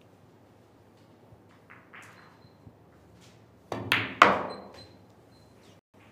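A pool shot: the cue strikes the cue ball and the balls knock together in a quick cluster of sharp clicks about four seconds in. The last click is the loudest and rings briefly.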